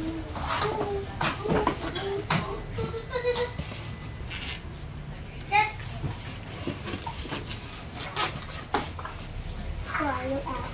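Crinkling and clicking of plastic wrap, styrofoam and cardboard as a convection oven's glass bowl is handled in its box. A child's voice chatters and calls out now and then.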